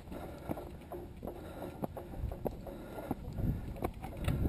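Footsteps of a hiker climbing rough stone steps on a dirt trail, a short scuff or tap about every half second, over wind rumbling on the microphone.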